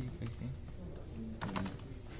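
A few keystrokes on a computer keyboard as a short command is typed, the clicks clustered about one and a half seconds in, with a low voice underneath.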